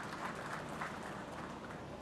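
Light, scattered applause from a small audience, thinning out about halfway through.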